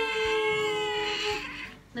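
A domestic cat meowing: one long, drawn-out meow that holds a steady pitch and fades out shortly before the end.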